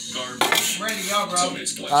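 Metal clinking from the parts of a cigarette-rolling machine being handled as a tube cassette is loaded, with one sharp click about half a second in.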